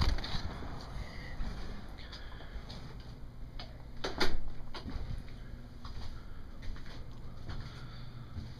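Footsteps and camera handling noise over a low, steady rumble as someone walks in through a doorway, with scattered light clicks and one louder knock about four seconds in.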